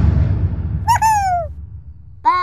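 Edited-in transition sound effect for a title card: a loud whoosh with a low rumble that fades away, with a short high tone sliding downward about a second in.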